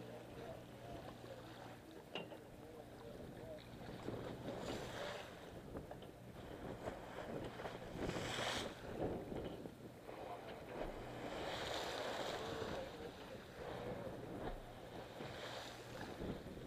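Sportfishing boat at sea: a steady low engine hum under wind and water noise, with several gusts of wind buffeting the microphone, the strongest about halfway through.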